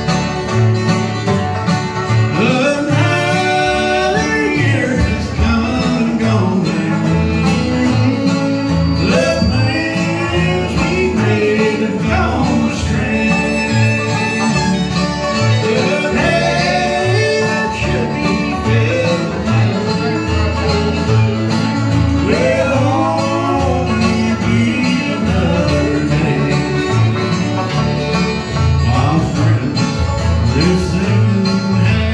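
A bluegrass band playing live: acoustic guitars, banjo, fiddle and upright bass together.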